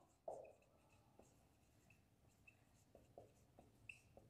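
Faint squeaks and light taps of a felt marker writing on a whiteboard: a soft knock as the pen touches down, then short high squeaks with each stroke.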